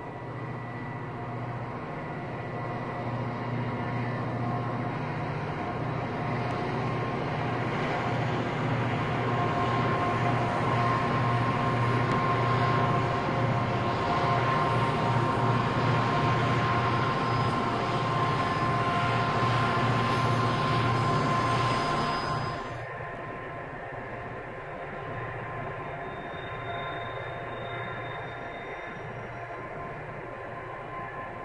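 Freight train passing at speed: steel wheels rolling and cars rattling over the rails, with the deep hum of a Rio Grande diesel locomotive running mid-train. The hum builds as the locomotive draws near and drops off suddenly about three quarters of the way through, leaving the quieter rolling of the last cars.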